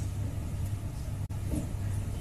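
Steady low hum with a faint background hiss from a broadcast sound feed, and a brief dropout just past a second in.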